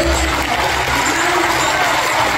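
Audience applauding, a dense steady clatter of many hands, as the tail of the music fades out in the first half second.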